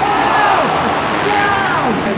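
Motocross bike engines revving, their pitch sweeping down and back up, over arena crowd noise.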